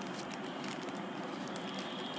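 Faint crinkling of a clear plastic toy bag being handled, light scattered ticks over a steady background hiss.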